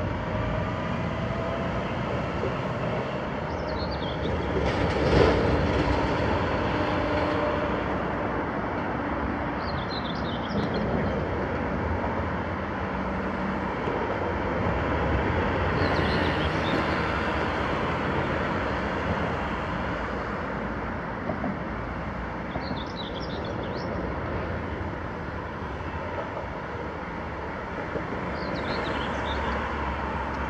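A steady mechanical rumble and hiss, of the kind that engines or traffic make. Faint high chirps come back about every six seconds.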